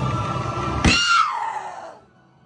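Scary haunted-attraction soundtrack with a heavy low rumble, broken about a second in by a sudden bang and a high scream that slides down in pitch and fades. The sound dies away near the end.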